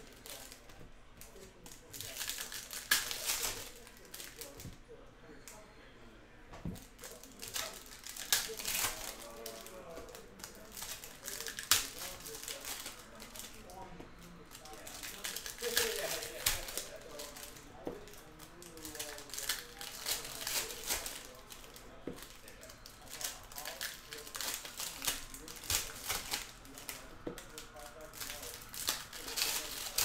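Foil wrappers of 2020-21 Upper Deck O-Pee-Chee Platinum hockey card packs being torn open and crinkled by hand, in irregular runs of sharp crackling rustles with quieter gaps between.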